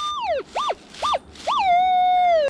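Minelab Equinox 800 metal detector sounding target tones as the coil sweeps over buried metal: a beep whose pitch falls away, two short beeps, then a longer tone that drops and holds at a lower pitch. The tones signal another metal target in the ground.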